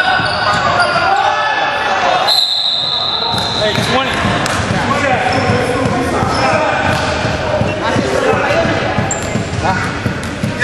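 Basketball game sounds in a gym: the ball bouncing on the hardwood court, sneakers squeaking and players' voices echoing in the hall. A referee's whistle blows once, a little over two seconds in, held about a second and a half, stopping play.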